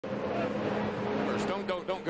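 NASCAR stock car V8 engines giving a steady, even drone in the background, with a man starting to speak about three quarters of the way through.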